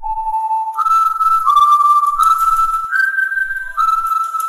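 A short whistled tune of about six held notes stepping up and down, over a faint ticking backing: a stock time-skip jingle.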